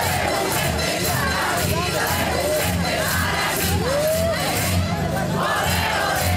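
A crowd shouting and calling over a marching band's drums, which beat a steady march rhythm of about two strokes a second.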